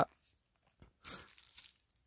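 Bubble wrap crinkling and crackling as it is handled, starting about a second in and lasting under a second.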